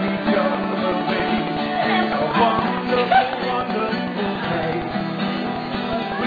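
Acoustic guitar strummed in a steady fast rhythm, with singing over it.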